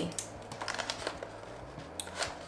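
Packaging being opened by hand: faint, irregular small clicks and handling noises.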